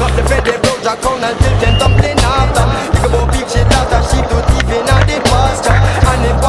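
Reggae-style music with a heavy pulsing bass line, with skateboard sounds mixed under it: wheels rolling on concrete and sharp clacks of the board.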